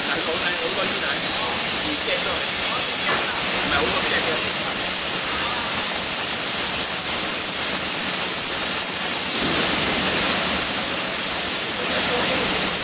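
Steady, loud hiss of foundry noise while molten stainless steel is poured into sand moulds, with workers' voices faintly audible near the start and again near the end.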